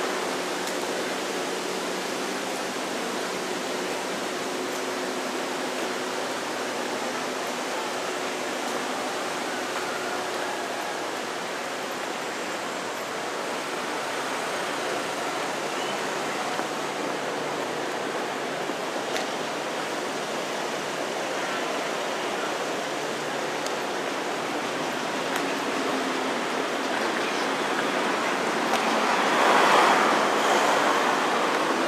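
Steady outdoor city street ambience, an even wash of noise with no single clear source, which grows louder over the last couple of seconds.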